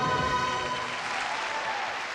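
The song's final held chord ends about half a second in, and audience applause takes over, slowly fading.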